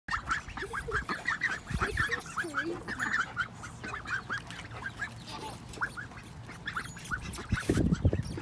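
Nearly grown white ducklings calling with rapid short high peeps, several a second, thinning out later, mixed with a few lower quacking calls. A short, louder burst of noise comes near the end.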